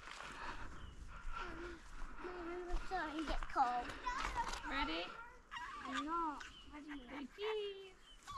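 Young children's voices some way off, calling and babbling in high, sing-song tones that rise and fall in pitch, without clear words.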